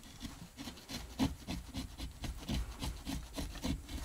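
A hand wood-carving chisel shaving and scraping fresh wood in short, irregular strokes, about three a second.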